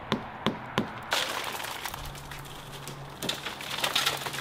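Shattered tempered glass of a van's rear window cracking as gloved hands pull the taped pieces out of the frame: a few sharp cracks in the first second, then a denser run of crackling and snapping.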